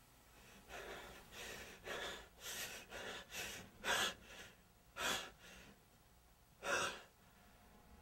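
A person breathing hard in quick gasps, about two a second, then slowing to a few separate breaths, with a last sharp one near the end.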